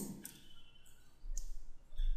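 Quiet room tone with a faint single click about one and a half seconds in, and a low hum under the second half.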